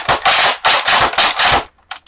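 A fast run of loud clacks, about five or six a second, from a plastic Nerf blaster being worked, stopping shortly before the end.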